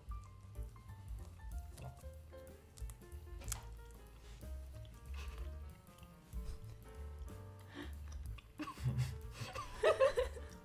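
Light background music of short stepping notes over a pulsing bass, with faint crunches of a crispy dried fish snack being chewed. A brief laugh comes near the end.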